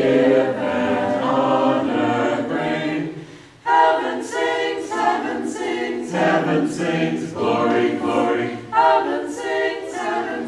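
Small mixed church choir singing a Christmas carol a cappella, phrase by phrase. The voices die away briefly about three seconds in and come back in strongly.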